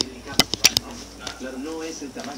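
Four quick, sharp knocks or clicks close to the microphone in the first second, followed by a person's voice.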